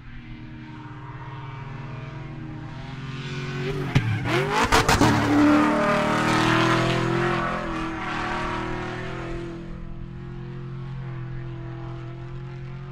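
Racing car sound effect: a race car engine runs steadily. About four to five seconds in it swells to its loudest, its pitch dipping and rising with a few sharp cracks, then it carries on at a steady drone.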